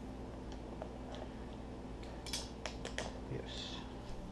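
Small hardware being handled: a few light clicks, then a quick run of sharp clicks about two seconds in and a short scrape near the end, as a metal canopy pole and its fitting are worked by hand, over a steady low hum.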